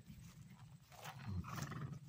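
A paint horse being led over grass: soft hoof and footfalls, and a low, breathy snort from the horse about a second and a half in.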